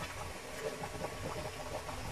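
Fish curry with coconut milk simmering in a pan: a low, steady bubbling with faint scattered ticks.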